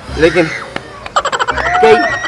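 A short vocal sound, then, about a second in, a rapid rattling croak-like train of pulses that runs to the end.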